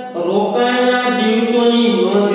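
One voice chanting a slow devotional melody in long, held notes that step from pitch to pitch.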